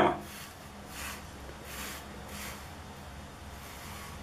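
Faint, soft scraping of two plastic bottle caps being slid across a sheet of paper, in a few short strokes.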